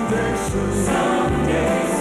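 Gospel song sung by a choir of voices over instrumental backing with low bass notes.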